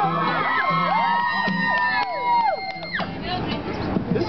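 A crowd of fans screaming and cheering, many high shrieks rising and falling over one another, over steady music tones that cut off abruptly about three seconds in.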